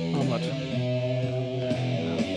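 A 1970 hard-rock record playing, its electric guitar run through a wah-wah pedal and holding sustained notes.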